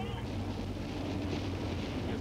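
Heavy truck's diesel engine running steadily at highway speed, a continuous low drone mixed with tyre and road-spray hiss on the wet road.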